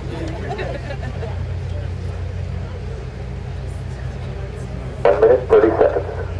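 A steady low hum, with faint crowd chatter over it, at a launch-viewing site during a space shuttle countdown.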